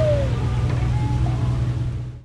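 A steady low rumble on a small boat on open water, with a few faint, brief tones over it; one of them falls in pitch near the start.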